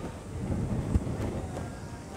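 Wind rumbling on the microphone, with a single low thump about a second in and a faint sharp click shortly after.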